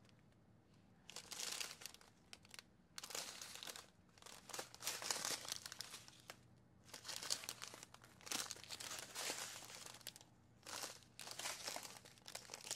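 Strips of small plastic bags of diamond-painting drills crinkling as they are handled and turned over, in about seven bursts of rustling with short pauses between.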